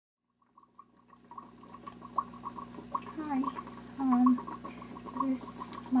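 Small aquarium filter running: a steady hum with water trickling and a quick, irregular patter of bubbling. A person's voice comes in briefly about halfway through and again near the end.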